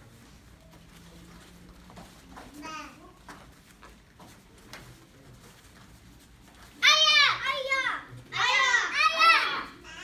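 Young children's kihap shouts ('Aya!'). After a quiet stretch, two runs of sharp, high-pitched yells come about seven and eight and a half seconds in.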